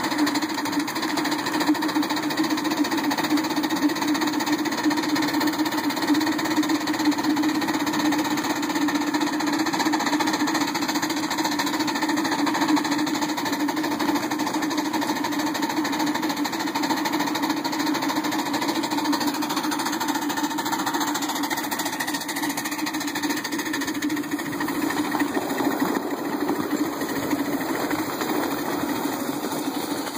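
Live-steam ride-on miniature locomotive under way, heard from just behind its cab: a steady mechanical running noise from the engine and the wheels on the rails.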